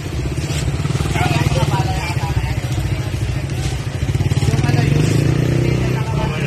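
An engine running close by with a fast, even pulse, its pitch rising about four and a half seconds in as it revs; voices of people in the street around it.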